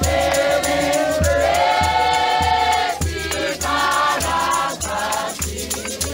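Church congregation singing together in chorus, many voices holding and changing notes in harmony, over a steady low beat about one and a half times a second.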